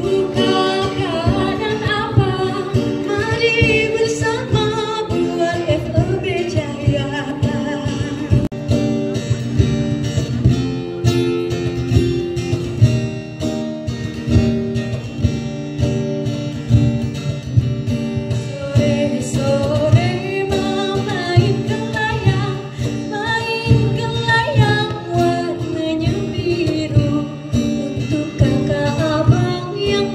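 A woman singing a melody over live plucked string instrument accompaniment.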